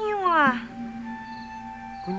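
A voice falling in pitch through a drawn-out sound in the first half-second, then background film-score music holding steady sustained notes.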